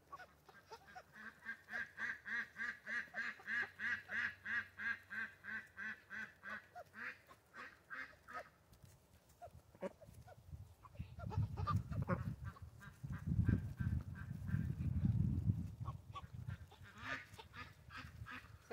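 Drake ducks giving soft, raspy whisper quacks, a fast even run of about three calls a second, the quiet call that marks the males. About ten seconds in a low rumble takes over for several seconds, and the calls start again briefly near the end.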